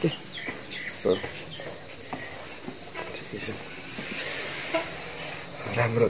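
A steady, high-pitched insect chorus droning without a break.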